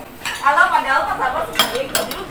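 Metal spoons and ceramic crockery clinking, with a couple of sharp clinks near the end.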